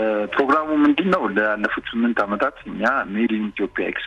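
Speech only: a person talking continuously, with the narrow, thin sound of a radio broadcast.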